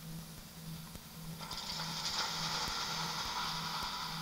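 Electronic soundscape: a low tone pulsing about two and a half times a second, joined about a second and a half in by a louder band of hissing noise.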